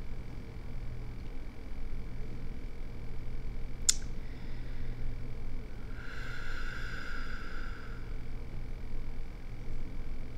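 Quiet room tone with a steady low hum, a single sharp click about four seconds in, and a faint high-pitched tone lasting about two seconds in the second half.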